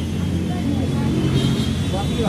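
Street traffic: a motor vehicle's engine running close by, a steady low rumble, with scraps of voices around it.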